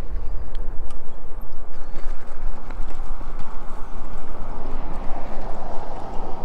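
Magicycle cruiser e-bike's fat tyres rolling and crunching over gravel and sand, a dense crackling noise, with low wind rumble on the chest-mounted microphone.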